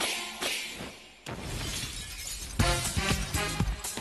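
TV series theme music over the credits. A hit rings out and fades, a sudden noisy crash comes in about a second in, and a steady beat with bass begins about halfway through.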